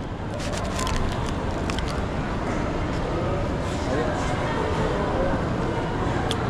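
Busy shopping-mall ambience: a steady hum with the faint chatter of many shoppers' voices and a few faint clicks in the first couple of seconds.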